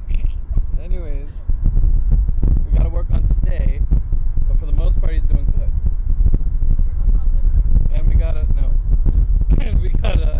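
A man laughing in short bursts, with scattered voice sounds, over the steady low rumble of a car's cabin on the move.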